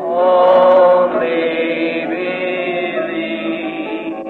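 Group of voices singing a slow hymn, holding each note about a second before moving to the next. It sounds muffled, with no high end, as on an old tape recording.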